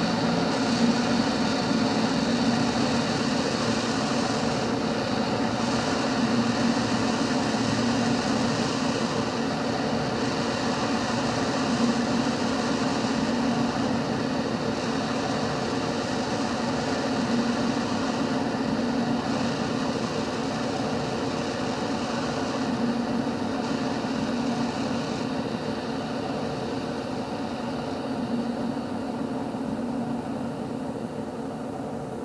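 Death-industrial drone music: a dense, steady wall of layered hum and noise with several sustained tones, slowly growing quieter toward the end.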